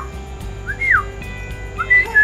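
Short whistled notes that rise and then fall, about a second apart: one about a second in and another starting near the end, over steady background music.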